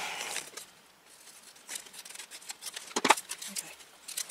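Paper and cardstock handled on a tabletop: faint rustling as a card frame is moved about over a journal page, with one sharp tap about three seconds in.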